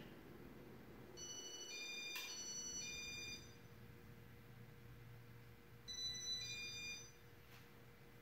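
Faint steady low hum of a Casablanca Zephyr ceiling fan running. Over it, a short electronic melody of high beeping notes plays twice, from about one to three seconds in and again around six seconds.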